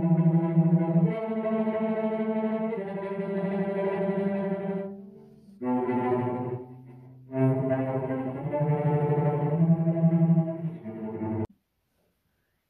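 Cello played with bowed tremolo: rapid short bow strokes sounding sustained low notes, in three phrases with brief pauses about five and seven seconds in. It cuts off abruptly near the end.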